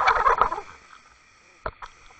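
Underwater knocking from a double bucktail rig being jigged on a sandy bottom: a short rattling clatter lasting about half a second at the start, then two light clicks near the end.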